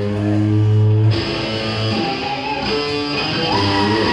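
Live rock band with electric guitars played loud through amplifiers: a held chord rings until about a second in, then gives way to a busier run of shifting guitar notes.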